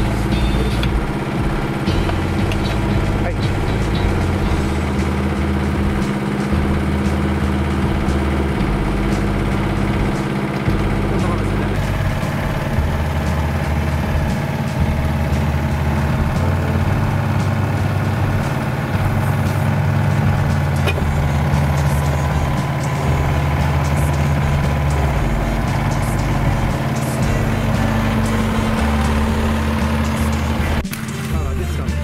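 Yanmar SV05 mini excavator's diesel engine running steadily, with background music playing over it.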